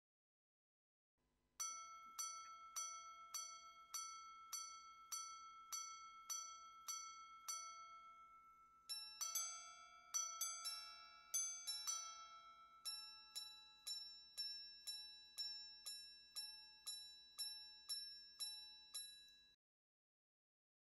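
Patek Philippe Ref. 6300G Grandmaster Chime wristwatch chiming on its gongs. An even run of about a dozen ringing strikes is followed by a quicker cluster of mixed-pitch strikes, then another even run of about a dozen strikes in a different tone, in the hours, quarters and minutes pattern of a minute repeater.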